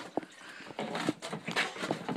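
Irregular clunks, knocks and scraping as an old Suzuki DR125 dirt bike is dragged along the floor, its wheels seized so it barely rolls; a sharp click comes just after the start.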